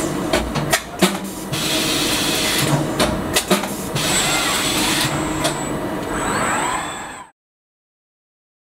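Industrial robot arm with a Tucker stud welding head running: a steady machine hum with a rising-and-falling servo whine, and several sharp mechanical clicks in the first few seconds. The sound fades out and cuts to silence about seven seconds in.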